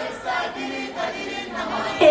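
Live pop song over a PA system: singing over a backing track, fairly faint.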